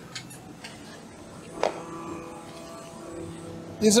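A single sharp metallic knock about a second and a half in, ringing on for about two seconds, over the faint steady noise of machines running in a machining hall.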